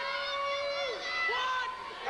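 A man talking into a handheld microphone, his words not clear enough to make out, with one drawn-out syllable about the first half second.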